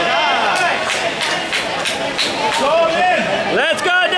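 Spectators and coaches shouting and yelling during a taekwondo sparring exchange, over a run of sharp smacks a few tenths of a second apart, with a rising yell near the end.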